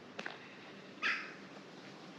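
A single short, sharp animal call about a second in, fading quickly.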